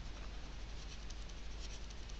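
Faint scratching of a stylus on a tablet as a word is handwritten, in many short strokes.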